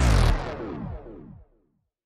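Tail of a synthesized electronic logo jingle: its pitch sweeps downward while it fades, and it cuts to silence about one and a half seconds in.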